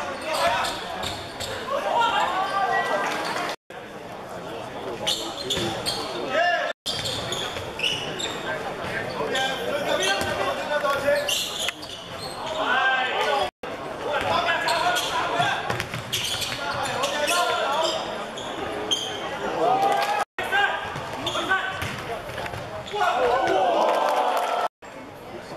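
Indoor basketball game: a ball bouncing on a hardwood court amid shouting voices. The sound drops out briefly four times.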